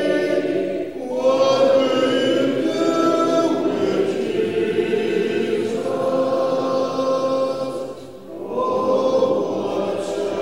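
A congregation singing a hymn in unaccompanied four-part harmony, many voices holding long notes. There are short breaks between sung lines about a second in and about eight seconds in.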